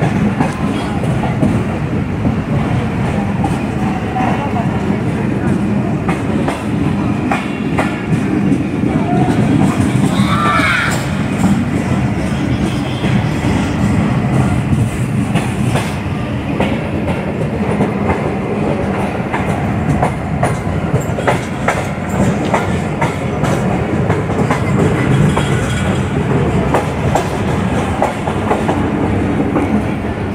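Passenger coaches of a moving train running over the rails with a steady rumble, the wheels clicking over rail joints at irregular intervals.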